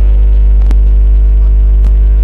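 Loud, steady electrical mains hum from the commentary and public-address sound system, with two short clicks about a second apart.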